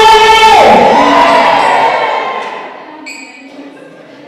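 A woman's voice singing a long high note, which slides down and trails off about two seconds in.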